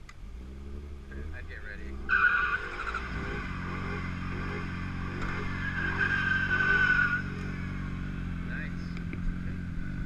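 Car tyres screeching in a burnout, a high steady screech that starts about two seconds in and lasts about five seconds, with an engine idling steadily underneath.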